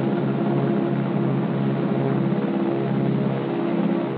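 Steady drone of a twin-engine WWII bomber's piston engines and propellers in a low pass, heard on an old film soundtrack with the treble cut off. It fades near the end.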